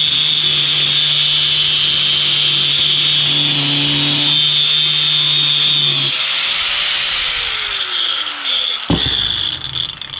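Angle grinder with a cutoff wheel cutting through a steel bolt held by hand, a loud, steady, high-pitched whine. About six seconds in the wheel breaks through and the cut ends. The motor then winds down with falling pitch, and there is a sharp knock near the end.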